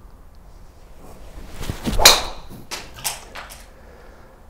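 A driver swung at a teed golf ball: a rising swish of the clubhead, then a sharp crack as the driver face strikes the ball about two seconds in. A few fainter clicks follow.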